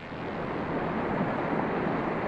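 Water pouring over a dam spillway: a steady rush of falling water that starts suddenly and swells slightly.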